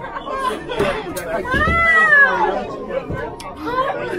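Excited chatter of several people's voices, with one long, high exclamation that rises and falls in pitch about halfway through.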